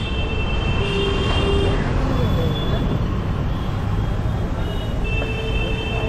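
Busy city street traffic: a steady rumble of vehicles and crowd noise, with high steady tones sounding twice, once in the first two seconds and again near the end.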